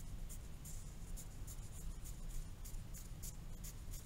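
Pencil drawing on a paper worksheet: a run of short scratching strokes, repeated several times as long thin rectangles are drawn.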